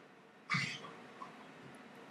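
A single short cough about half a second in, over quiet room tone.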